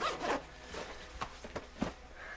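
Jacket zipper pulled in a quick zip near the start, then a few light knocks and rustles of clothing as the wearer moves.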